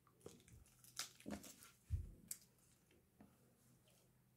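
Faint mouth sounds of a child working a hard sour candy: a few soft clicks and smacks from chewing and sucking, with one low thump about two seconds in.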